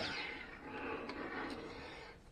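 A metal-cased power inverter being slid and turned around on a wooden tabletop: a soft scraping and rubbing handling noise, strongest at first and fading toward the end.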